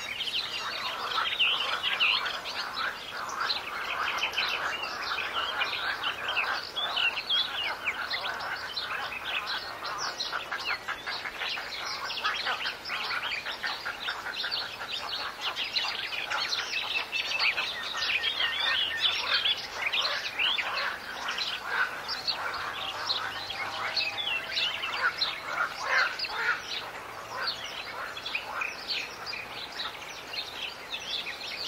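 Many small birds chirping at once, a dense, continuous chatter of short calls.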